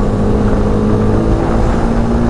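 BMW sport motorcycle's engine running at a steady pitch under throttle at road speed, with wind rushing over the microphone. The engine note steps up slightly about a second and a half in.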